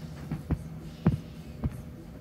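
Three or four soft, low thumps about half a second apart, over a faint steady hum.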